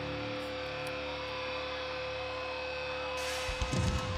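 Live hard rock band: a held electric guitar chord and a steady droning tone ring on and slowly fade, then the drum kit comes in with kick drum and cymbal hits near the end.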